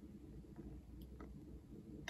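Near silence: room tone with a faint low hum, and two tiny ticks a little after a second in.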